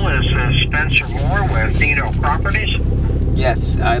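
Talking over the steady low rumble of a Ford Mustang, heard from inside its cabin.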